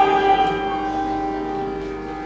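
Santoor strings struck with curved mallets near the start, then left ringing, the chord of bright metallic tones slowly fading.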